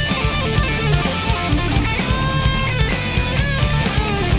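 Hard rock band recording playing: distorted electric guitar over driving bass and drums, with a few long held guitar notes in the middle.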